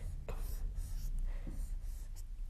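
Marker pen drawing on a whiteboard: several short, faint strokes with scratching and light squeaks.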